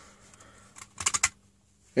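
Hard plastic clicking from a Transformers Leader Class Megatron toy's tank cannon and turret being worked by hand: one light click, then a quick run of about five clicks just after a second in.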